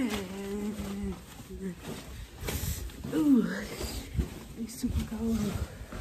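Wordless vocalizing by a voice: a long held note for about the first second and a half, a rising-and-falling swoop about three seconds in, and shorter held notes around five seconds, with a few short knocks in between.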